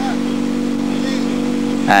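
Renault Clio rally car's engine idling with a steady, unchanging pitch.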